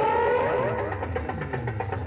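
Electronic sound effect played through a large DJ loudspeaker system: a steady tone that glides upward about half a second in, then breaks into a jumble of sweeping tones over a low hum.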